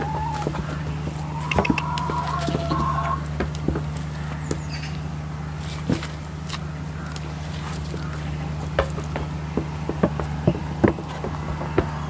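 Scattered sharp taps and knocks of goats' hooves moving on plastic feed tubs and straw, with a hen clucking briefly between about one and three seconds in, over a steady low hum.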